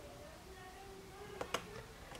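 Snap catch on a cotton swab box clicking open: two quick clicks about a second and a half in as the tab is pressed and the lid is released.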